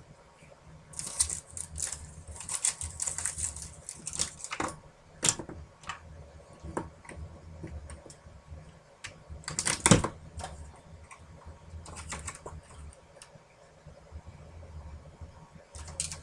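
Small plastic stamp ink pads clicking and clattering as they are picked up and put away, in irregular taps and knocks with one louder knock about ten seconds in, over a faint steady low hum.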